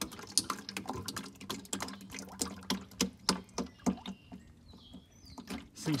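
Automatic transmission fluid pouring from the open drain hole of a ZF Tiptronic transmission pan into a plastic container, splashing with many irregular sharp patters over a low steady hum.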